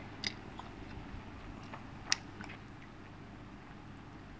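A man chewing a mouthful of yong tau foo, close to a clip-on microphone, with faint scattered mouth clicks and one sharper click about two seconds in.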